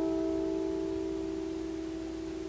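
Several plucked notes on a wooden lyre (Leier) ringing on together and slowly fading, with no new note struck.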